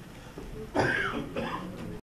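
A person coughing: one sharp, loud cough a little under a second in, followed by a quieter second vocal burst.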